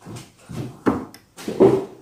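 A few short knocks and clatters as someone gets up and moves away from a table, with one sharp knock about a second in and a brief pitched, voice-like sound near the end.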